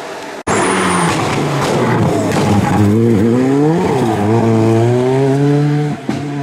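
Rally car engine under hard acceleration, starting abruptly about half a second in. Its note dips and climbs back twice, around the middle, as the driver lifts and shifts, then holds a steady high note as the car closes in.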